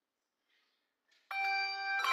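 A handbell choir starts ringing about a second in: a chord of sustained bell tones that begins suddenly and rings on, with more bells joining near the end.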